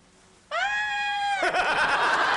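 A person's high-pitched drawn-out "ahh" squeal, rising sharply at the start and then held steady for about a second, breaking into a loud burst of group laughter and chatter near the end.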